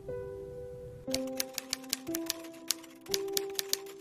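Typewriter keystroke sound effect: a quick run of sharp key clicks starting about a second in, with a brief pause near three seconds, over soft background music with held notes.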